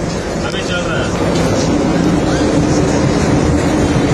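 Mobile crane's engine running and road noise heard inside the cab while driving. A steady drone firms up about halfway through as the noise grows slightly louder.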